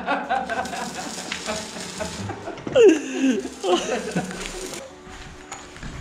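Stick (arc) welding on steel rebar: a steady frying crackle from the arc that stops about five seconds in.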